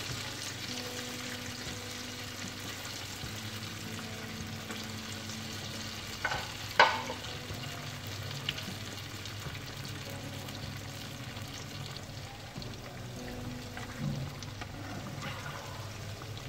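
Steamed moong dal dumplings sizzling steadily as they fry in hot oil in a pan. There is one brief sharp clink about seven seconds in.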